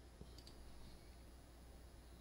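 Near silence, with a single faint mouse-button click about a fifth of a second in, clicking the installer's Proceed button.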